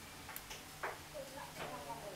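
Eurasian tree sparrows chirping at a feeder: a few short chirps, the loudest about a second in, over a faint steady hum.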